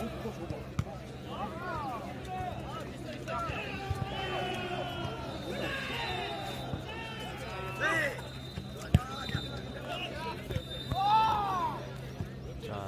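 A jokgu ball being struck by players' feet and bouncing on the turf during a rally: a few sharp thuds, the loudest about nine seconds in, among the players' shouted calls.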